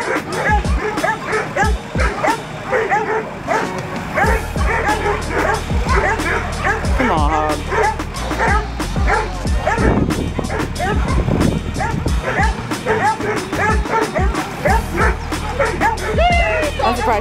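Two bay dogs barking rapidly and without let-up at a wild hog, holding the hog at bay. The barking is the baying itself. Music plays underneath.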